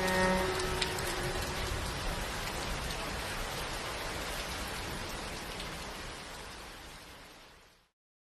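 Steady rain, its patter continuing on its own after the last notes of the music die away about half a second in, then fading out gradually near the end.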